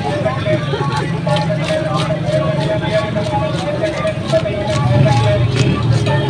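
Street traffic and people's voices at a busy roadside market, with a steady low rumble of vehicles and scattered short clicks.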